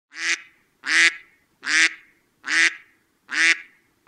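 Five short, evenly spaced waterfowl calls, each a clear pitched call about a third of a second long, with silence between them.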